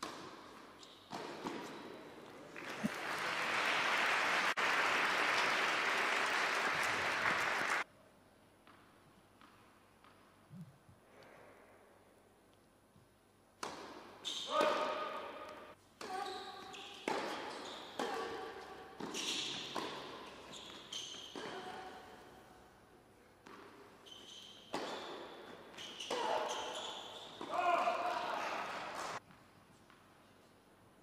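Tennis spectators applauding after a point: the clapping swells over a couple of seconds, holds for about five seconds, then cuts off abruptly. Later, a person's voice talks for most of the second half.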